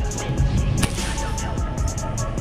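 Background music with a steady beat: a low bass line under quick, evenly spaced high ticks.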